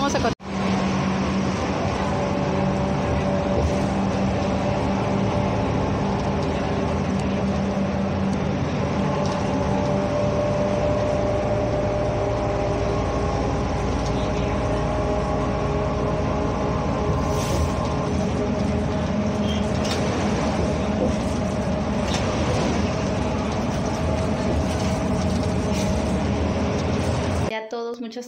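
Inside a moving city bus: a steady engine and drivetrain drone with held whining tones, cutting off abruptly just before the end.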